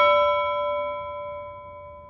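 A single bell-like musical note, struck just before and ringing out, fading away steadily.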